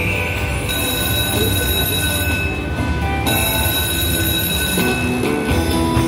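Buffalo Xtreme slot machine playing electronic sounds: several long, steady held tones over a dense bed of casino floor noise. New lower tones come in near the end as the Mini jackpot win starts.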